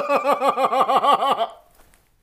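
A man laughing hard in a rapid, even run of about ten 'ha' pulses that stops suddenly about a second and a half in.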